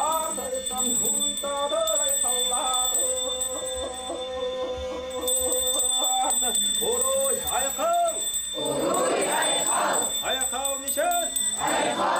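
A man chanting a Sakha algys blessing in a drawn-out, melodic voice, holding long notes that step up and down. From about halfway through the chant breaks into shorter phrases, with loud, breathy cries near the end.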